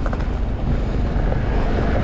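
Steady low wind rumble on the action-camera microphone as a mountain bike rolls over loose gravel, with a few light crunches and ticks from the tyres and bike.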